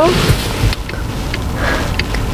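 Cabin noise inside a Mercedes E 300 de plug-in hybrid running in electric mode: a low rumble under a steady hiss, with no diesel engine running yet.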